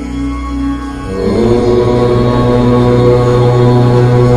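A long, steady chanted "Om" comes in about a second in and is held over a sustained meditation-music drone.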